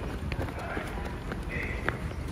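A child's sneakers stamping and scuffing on a concrete pavement as he hops and dances about: a handful of sharp, uneven steps over a steady low rumble.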